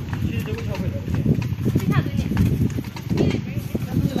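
A person speaking in short phrases over a dense, rough low rumble with many small knocks.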